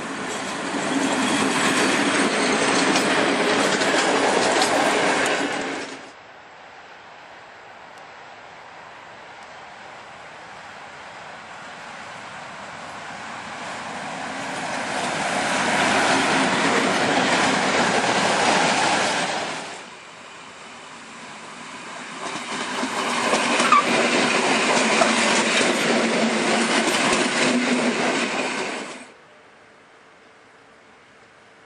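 Locomotive-hauled freight trains rolling past close by, wheels clattering on the rails, in three loud passes that each cut off abruptly; the middle one builds up gradually as the train draws near. A brief high wheel squeal sounds about two-thirds of the way through.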